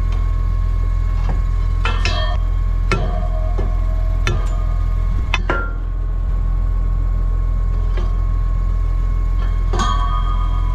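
A metal bar clinks and knocks against a stone jammed between the tines of a Kivi Pekka stone picker's rotor as it is prised loose; the stone has stalled the rotor. There are a handful of sharp knocks spread through, the loudest about five seconds in, over the steady hum of the tractor engine running.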